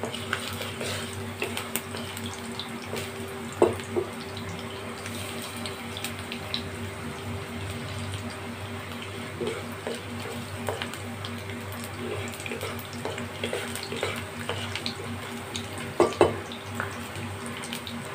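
Chopped garlic sizzling and crackling in hot oil in a kadhai, with a few sharper knocks of a wooden spatula against the pan, loudest about 4 s and 16 s in. A steady low hum runs underneath.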